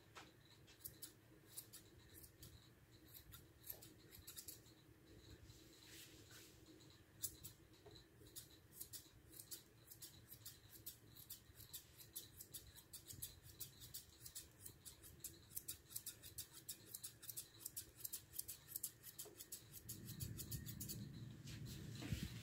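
Grooming shears snipping through a poodle's dense coat: a long run of faint, quick blade clicks that come faster through the second half. A low rustle of handling comes in near the end.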